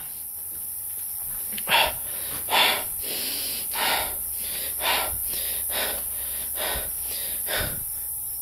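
A person breathing audibly close to the microphone, a breath about once a second, over a steady hiss.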